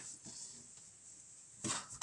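Quiet handling of a cardboard vinyl box set and its slipcase, with a brief rustle about three-quarters of the way through.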